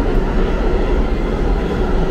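New York City subway train running along the platform track: a loud, steady rumble of wheels and cars.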